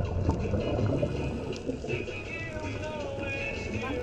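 Steady low rumble of water noise, with faint music over it.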